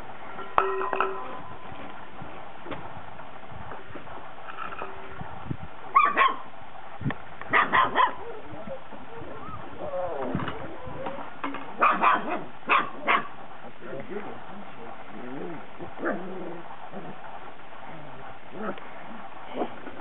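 Young puppies barking and yipping in short bursts, several in quick succession about six, eight and twelve to thirteen seconds in, with quieter sounds between.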